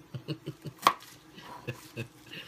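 A large kitchen knife chopping through leafy green vegetable stalks onto a cutting board. It is a quick run of short knocks, the loudest just under a second in, then a couple more near the end.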